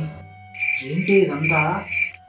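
Cricket chirping sound effect: a high chirp pulsing about four times, starting about half a second in, over a low voiced murmur.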